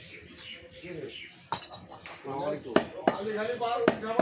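Sharp knocks of a cleaver and knife on meat on a wooden chopping block: one about a second and a half in, then several in the last second and a half, with voices talking in the background.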